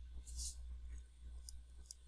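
Faint, scattered clicks and taps of a stylus writing on a tablet screen, over a steady low hum.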